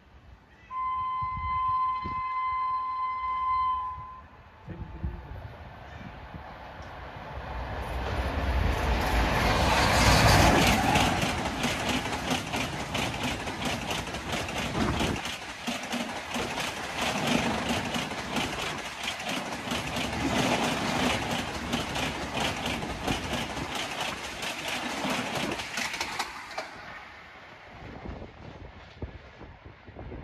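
WAP7 electric locomotive sounds one horn blast of about three seconds. Then the express passes at about 132 km/h: a rising rush that is loudest as the locomotive goes by, followed by a fast, steady clatter of coach wheels over the rail joints that fades away near the end.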